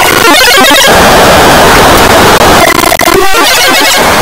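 A harshly distorted, clipped cartoon soundtrack: dense noise filling every pitch at full loudness, with choppy stuttering early on and again around the third second.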